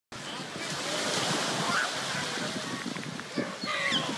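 Small waves breaking and washing up on a sandy beach, a steady rush, with faint distant voices and a short high call just before the end.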